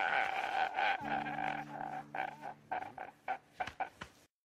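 A pitched, voice-like sound in the closing audio clip breaks into a string of short repeated pulses that grow fainter, over a low steady hum, and cuts off just after the end.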